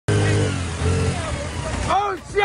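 Small motorcycle engines running, with people's voices calling out over them.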